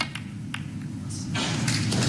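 A few sharp clicks of snooker balls striking on the table, then a hiss that builds up from about one and a half seconds in.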